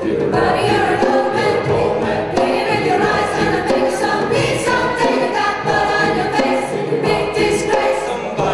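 Large mixed rock choir singing with a live band, a hand drum and other percussion beating under the voices.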